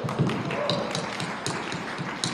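Audience applause, with many separate hand claps heard in a dense round of clapping.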